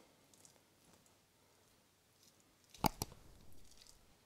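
Knife flaking cooked salmon on a wooden chopping board: soft quiet scraping, then two sharp taps of the blade against the board about three seconds in.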